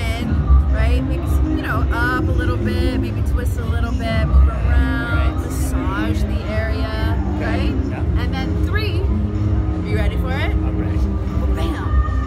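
Speech over loud background music with a strong bass.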